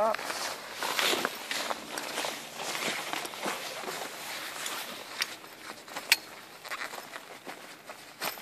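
Canvas rain fly rustling and scraping as it is pulled over a tent cot's frame and fitted at the corners, with a couple of sharp clicks in the second half.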